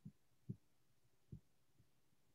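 Near silence, broken by three faint, short low thumps.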